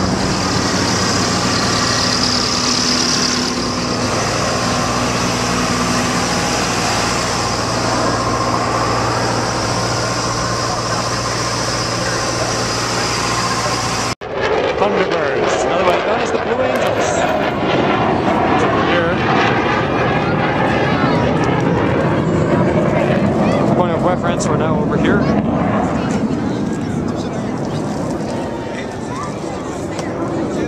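A steady mechanical drone with low humming tones on the airfield ramp, broken by a sudden cut about fourteen seconds in. After the cut comes the broad, wavering roar of a formation of jet aircraft flying overhead, with crowd voices.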